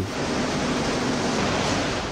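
A steady, even rushing noise with no distinct events.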